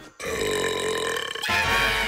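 A cartoon hyena's long, drawn-out burp lasting just over a second, followed by background music.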